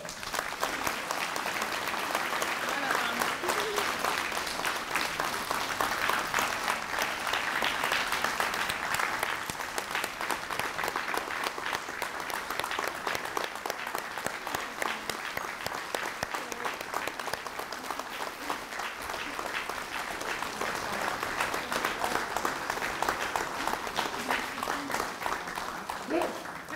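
Audience applauding in a long, steady round of dense hand clapping.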